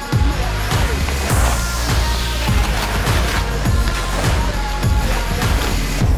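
Background music with a steady electronic beat over a deep sustained bass, with a falling whoosh about a second and a half in.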